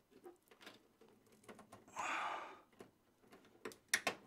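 Faint clicks and scrapes of a USB 3.0 front-panel cable being worked onto its motherboard header, with a short breathy exhale about two seconds in and a sharper click near the end.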